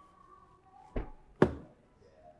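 Two dull thunks about half a second apart, the second louder with a short ringing tail.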